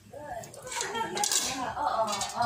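Clinks of metal cookware around an aluminium wok, with a voice talking in the background.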